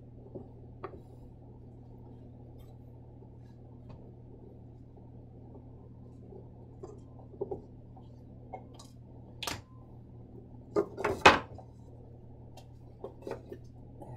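Handling sounds of a screwdriver backing screws out of a wooden box's back panel: scattered small clicks and clinks, a sharp click about nine and a half seconds in and a louder clatter of knocks about eleven seconds in, over a faint steady low hum.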